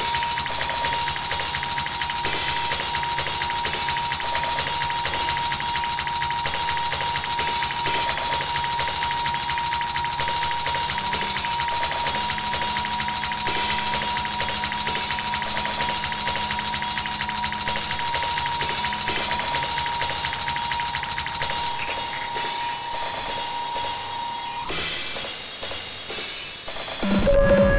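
Electronic beat played live on an Elektron Digitakt drum machine and sampler, a dense steady groove under a held high drone tone. The bass drops out shortly before the end, and the drone then cuts off.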